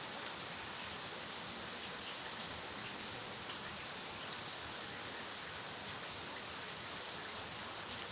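Steady rain falling on garden foliage and stone paths, an even hiss with a couple of louder drops.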